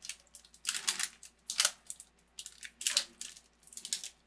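A plastic snack bag being torn open and crinkled by hand: a series of short, irregular crackling rustles.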